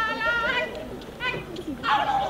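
Stage actors' voices: a drawn-out vocal note trails off about half a second in, followed by short scattered cries and exclamations.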